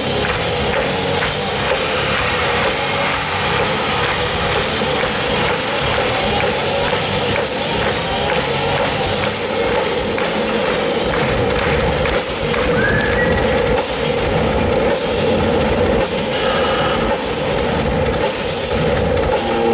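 Live rock drum solo on a ddrum kit in an arena, with rapid, continuous drum and cymbal strikes at full volume.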